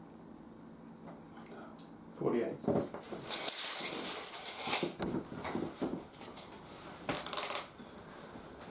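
Low room hum, then from about two seconds in short, wordless vocal sounds and a loud breathy hiss in the middle, with a few more short bursts near the end.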